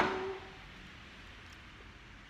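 A woman's drawn-out farewell word trailing off in the first half-second, with a short breathy burst at its start, then a faint steady hiss of background noise.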